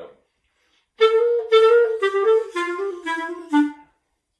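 Clarinet playing a short run of notes that steps downward in pitch, beginning about a second in, with detached staccato notes mixed among slurred groups. It illustrates a common fault: jumping off the staccato too quickly, so the beat is not kept even.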